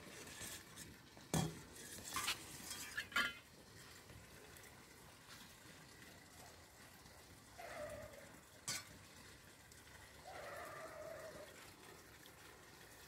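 A metal spoon stirring and clinking in a stainless steel bowl of pickling brine and tapping a glass jar as brine is spooned into jars of pickled mushrooms. There are a few sharp clinks in the first three or four seconds and one more a little before nine seconds in.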